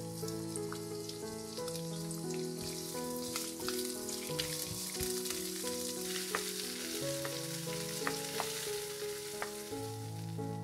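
Sliced red onions and garlic sizzling as they sauté in a nonstick frying pan, with a steady hiss and the odd click and scrape of a wooden spatula stirring them. Soft melodic background music plays underneath.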